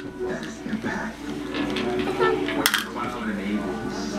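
Small hard objects clinking and tapping on a wooden tray table, with one sharp clink about two and a half seconds in.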